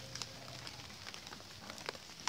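Quiet background with faint scattered ticks and crackles, and a faint low hum that fades out about halfway through.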